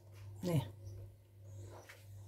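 Mostly quiet room tone with a steady low hum, broken about half a second in by one short spoken word.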